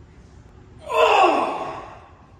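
A person's loud, breathy vocal sound, about a second long, starting about a second in and sinking steadily in pitch as it fades.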